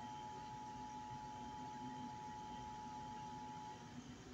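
Faint steady background hiss and low hum, with a steady high tone that cuts off shortly before the end.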